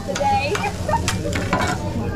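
Noodles and egg sizzling on a teppanyaki steel griddle, with a metal spatula scraping and clacking against the plate several times.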